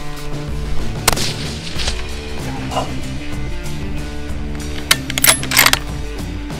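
Background music throughout, with a single rifle shot about a second in that rings out after the crack, and a quick cluster of sharp cracks near the end.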